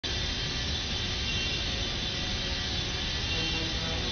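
Jet airliner's engines running steadily in flight, a loud, dense rumble with a high steady whine over it.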